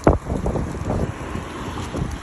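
Strong wind buffeting the phone's microphone: an uneven low rush with sudden louder gusts, the strongest right at the start.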